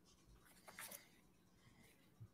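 Near silence: courtroom room tone, with a faint brief scratchy sound a little under a second in.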